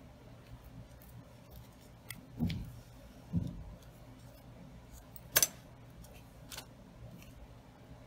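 Small handling sounds of ribbon, needle and thread during hand-sewing: a few faint clicks and two soft bumps, with one sharp click a little past halfway.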